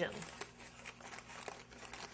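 Parchment paper crinkling and rustling faintly under the hands as pie dough is pressed through it onto the pie's edge, with small irregular crackles.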